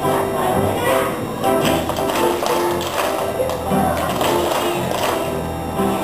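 Music playing with a group of children clapping along in time, about three claps a second through the middle of the stretch.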